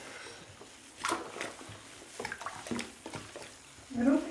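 Quiet splashing and sloshing of bath water as a toddler moves in a bathtub: a short splash about a second in, then a few small splashes and drips.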